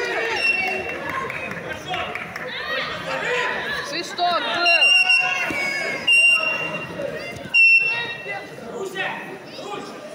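Referee's whistle blown in three short blasts, about five, six and seven and a half seconds in; these are the loudest sounds. Chatter and calls from coaches and spectators echo in a large sports hall throughout.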